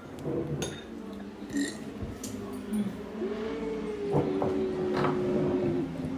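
Spoons clinking lightly against ceramic bowls during a meal. A small child's voice holds one long steady note from about halfway through to near the end.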